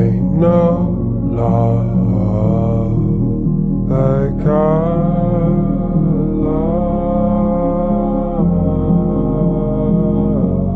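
A slowed-down song: long, held, gliding vocal notes over steady low sustained chords and bass.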